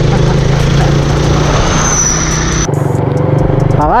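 Suzuki Raider 150 four-stroke single-cylinder engine running steadily while riding, heard under heavy wind noise on the rider's microphone; the wind noise drops away suddenly about three seconds in.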